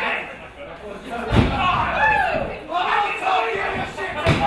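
A heavy thud on the wrestling ring's canvas about a second in, among shouting voices from the wrestlers and the crowd around the ring.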